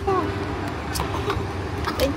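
Steady low hum in a parked car's cabin, with a brief snatch of voice at the start and a few light clicks and handling noises about a second in.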